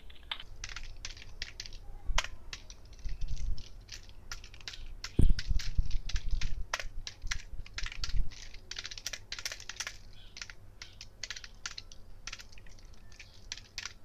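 Typing on a computer keyboard: a run of irregular keystroke clicks, with a few low thumps, the loudest about five seconds in.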